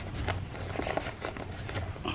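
Paper and card rustling faintly as hands handle the pages and pockets of a handmade junk journal, with a few small taps, over a low steady hum.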